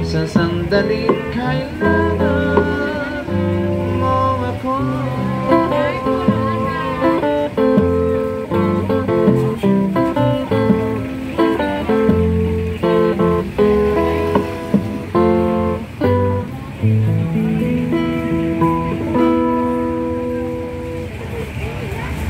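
Harmonica played in a neck rack, carrying a melody of held notes over a strummed and picked acoustic guitar: an instrumental break between sung verses.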